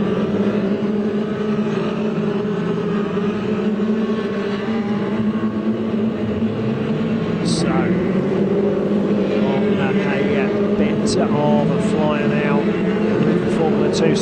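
Formula 2 stock cars racing in a pack, their engines making a steady overlapping drone whose pitch rises and falls as the drivers rev and lift through the bends.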